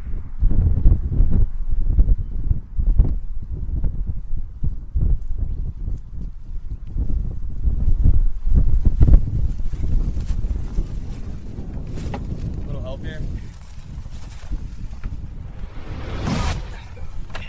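Wind buffeting the microphone in an open field, in gusty low rumbles. Fainter rustling and light ticks come in during the last few seconds.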